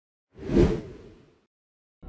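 A single whoosh sound effect that swells quickly and fades away within about a second.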